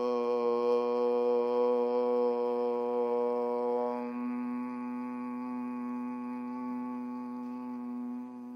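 A man chanting one long, steady Om on a single pitch. About halfway through, the open vowel closes into a softer hummed 'mmm'.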